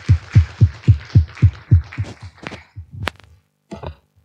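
Audience applauding, with one person's claps close to the microphone standing out as a steady beat of about four claps a second. The applause dies away about three seconds in, followed by a single sharp click.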